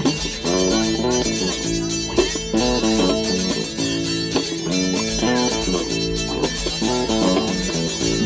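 Instrumental passage of an indie folk song: an acoustic guitar strumming a repeating chord pattern over an electric bass guitar, with no singing.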